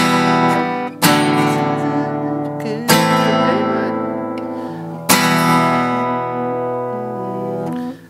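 Steel-string acoustic guitar: four single chord strums, about two seconds apart, each left to ring out and fade slowly.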